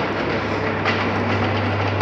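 A steady low mechanical hum over an even hiss, the hum firming up shortly after the start and holding steady.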